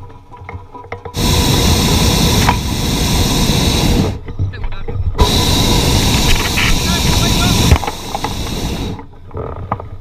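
Hot-air balloon propane burner firing overhead in two long blasts of about three seconds each, with a second's break between them.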